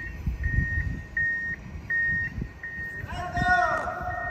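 Reversing alarm of job-site machinery beeping steadily at one pitch, about three beeps every two seconds, over a low rumble of construction noise. About three seconds in, a wavering tone glides in and settles into a steady hum.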